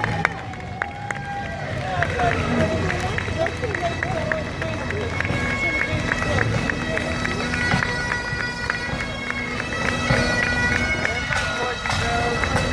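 Bagpipes playing a marching tune over a steady drone, the melody coming through more clearly partway in, with crowd chatter around.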